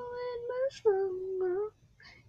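A young girl singing softly and unaccompanied, holding one long note and then a slightly lower one, which breaks off shortly before the end.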